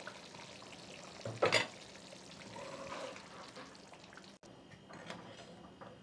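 Thick green mutton gravy bubbling faintly in a pot as a ladle stirs it, with one brief clatter about a second and a half in.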